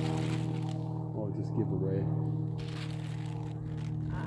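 Background music of steady sustained tones, with a faint voice heard briefly in the middle.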